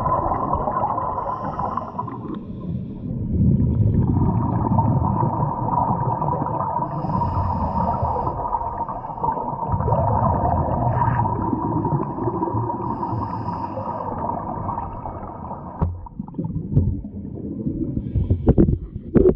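Underwater sound of scuba divers breathing through their regulators: rumbling surges of exhaled bubbles and short hisses of inhalation over a steady hum. A few sharp knocks near the end.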